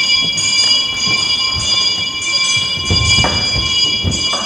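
A steady, high bell-like ringing of several tones held together, with a lower tone dropping out about three seconds in, over the thuds of footsteps on a wooden stage.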